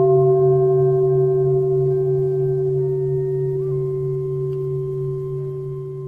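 A long bell-like ringing tone, struck just before and slowly dying away, with a low hum beneath it.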